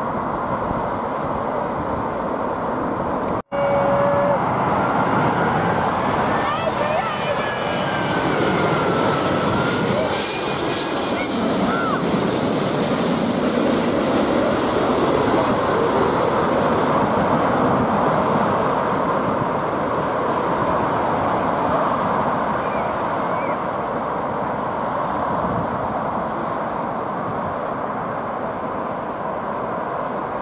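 A large jet airliner on final approach passes low overhead: its engine noise swells to a peak with a whining tone that slides in pitch, then eases into a steady rush. A short break in the sound comes a few seconds in.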